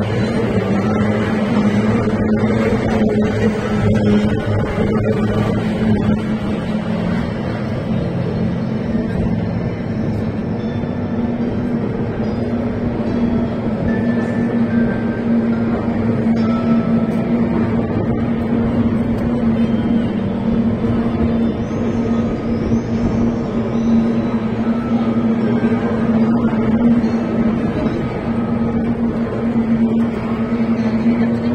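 Racing hydroplanes' two-stroke outboard engines running at speed around the course, a steady high drone that holds one pitch throughout.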